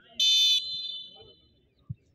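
Referee's whistle blown once, the signal to take the penalty kick: a shrill blast about a quarter second in that trails away over about a second. A soft thud comes near the end.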